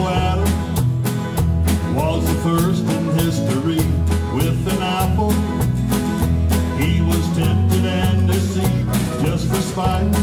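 Traditional country band playing live with a steady beat: banjo, acoustic guitar, electric bass, fiddle, piano and drums.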